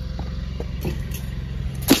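A vehicle engine idling steadily with a low, even hum, with a sharp knock near the end.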